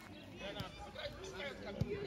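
Children's voices calling and shouting across an outdoor football pitch, with a single short thud near the end.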